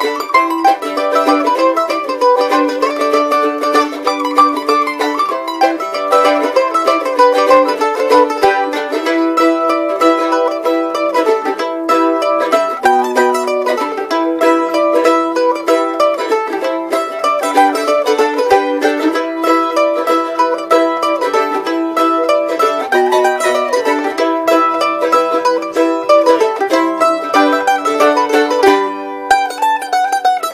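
Acoustic A-style mandolin picked with a flatpick, playing a fast fiddle-tune melody of quick single notes.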